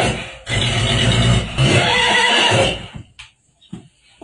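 Horse neighing loudly for nearly three seconds, broken twice, then stopping.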